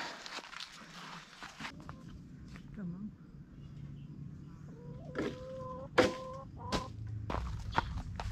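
A chicken's long call held on one steady pitch from about five to six and a half seconds in, with several sharp knocks of a long pole striking walnut tree branches, the loudest about six seconds in.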